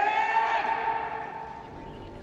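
A man's shout of "Detective!" with its last syllable drawn out, held on one high pitch and then fading away over about a second and a half.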